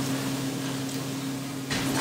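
Restaurant room tone: a steady low machine hum over a faint background haze, with a voice starting again near the end.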